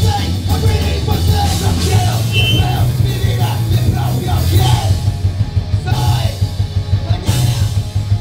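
A Tex-Mex punk band playing live and loud: accordion, distorted electric guitars, heavy bass and a drum kit driving a fast rock beat.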